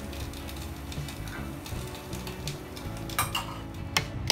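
Metal ladle knocking against an aluminium soup pot and a ceramic bowl while noodle soup is served, with two sharp clinks near the end, over quiet background music.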